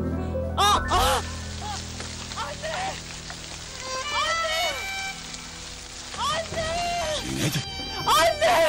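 A woman sobbing and crying out in short anguished wails, over sustained low dramatic background music.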